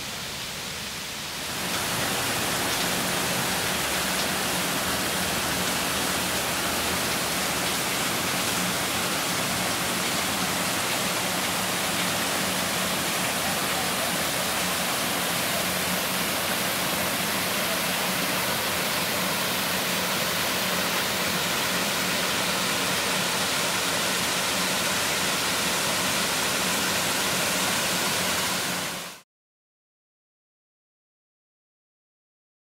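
Steady rush of a shallow creek running over rocks. It gets louder about a second and a half in and cuts off abruptly near the end.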